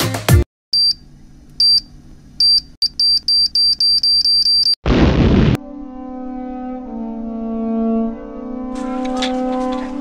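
Edited comedy sound effects: a high electronic beep repeats, a few times slowly and then about four times a second like a countdown, then cuts off into a short explosion blast about five seconds in. A held low chord of music follows the blast.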